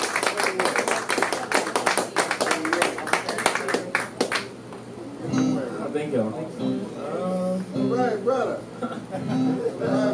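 Audience applauding, stopping about four and a half seconds in. Voices talk quietly after it.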